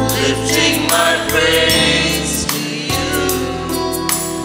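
Small mixed choir of men and women singing an offertory hymn at Mass, accompanied by an electronic keyboard holding sustained bass notes that change every second or so.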